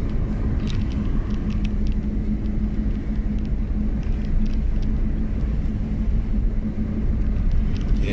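Car interior noise while driving: a steady low engine hum and tyre rumble heard from inside the cabin.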